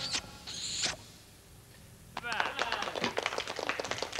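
A brief hiss, a pause, then a children's audience clapping and chattering with dense patter and scattered voices.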